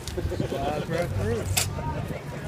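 People talking over a steady low hum, with one sharp click about one and a half seconds in.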